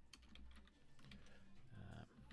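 Faint typing on a computer keyboard: a quick, uneven run of key clicks as a word is typed.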